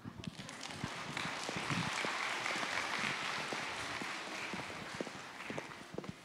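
Audience applauding, building about a second in and fading near the end.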